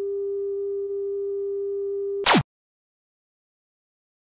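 Steady test-card tone, a single low beep held for about two seconds. It is cut off by a short burst of static with a falling pitch sweep.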